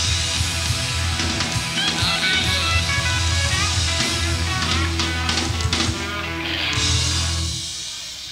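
Live rock band, with electric guitar, bass and drums, playing to the close of a song, recorded on a cassette. The bass and drums stop about seven and a half seconds in and the last notes ring out and fade.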